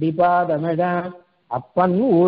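A man chanting a verse in a sing-song recitation, holding level notes. There are two phrases with a short pause past the middle.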